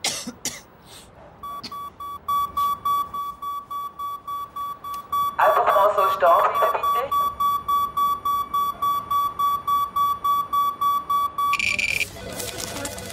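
Radioactivity alarm at a waste incineration plant's delivery scanner, beeping rapidly in one high tone, about three beeps a second, as the scan flags radioactive material in the waste. A few sharp clicks come just before the beeping starts.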